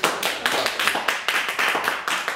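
Small audience applauding: many hands clapping in a quick, irregular run of separate claps.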